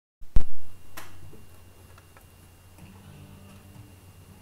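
A loud low thump, then a sharp click and a few fainter clicks with faint low tones: handling noise from an acoustic guitar and microphone as the guitarist settles in.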